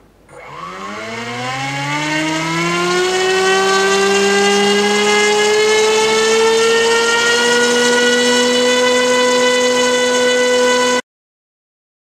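Brushless mini-quad motor spinning a Gemfan 5x3 (5030) plastic propeller on a thrust stand: a whine that rises in pitch over the first few seconds as the throttle comes up, then holds steady at hover-level load of about 150 g of thrust. It cuts off suddenly near the end.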